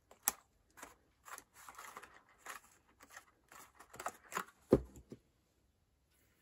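Cardstock card being handled: light rustling, scraping and tapping of paper. A louder knock comes about three-quarters of the way through.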